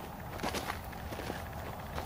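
Footsteps of a person walking on loose dirt: a few soft, irregular steps.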